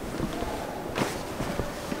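A few soft footsteps on a wooden floor over a steady room hum.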